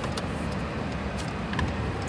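Steady road and engine noise inside the cab of a moving truck, with a few faint clicks.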